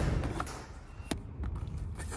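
Small cardboard boxes being handled and picked up off a concrete floor, with one sharp tap about a second in.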